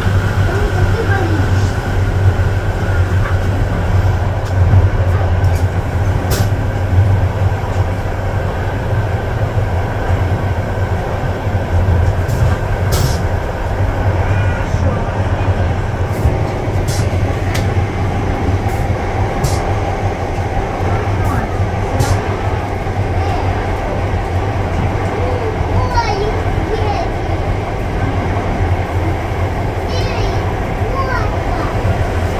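Train running along the track, heard from on board: a steady low rumble with scattered sharp clicks.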